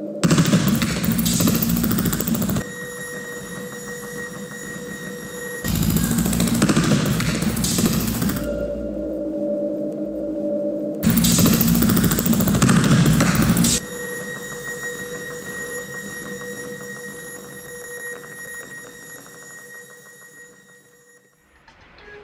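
Electronic soundtrack of an interactive sound and light projection installation: three loud bursts of dense, crackling noise, each about three seconds long, alternating with steady, held electronic tones, then fading away over the last few seconds.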